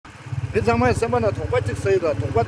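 A man talking over a motorcycle engine idling steadily underneath, a low, even rumble.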